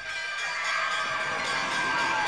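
A crowd of children shouting and cheering, a dense noisy din over a steady high note.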